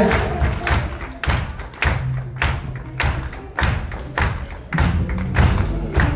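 A live band playing an instrumental passage: a steady drum beat over a bass line, with electric guitar and keyboard.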